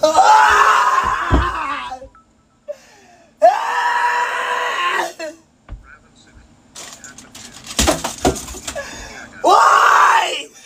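A young man screaming in long, strained yells of frustration, three of them, the last starting near the end. Between the yells come several thumps, with a quick run of them about eight seconds in.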